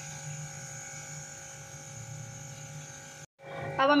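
Crushed almonds frying in hot desi ghee in a karahi: a steady sizzle under a constant electrical hum. The sound cuts out abruptly for a moment near the end.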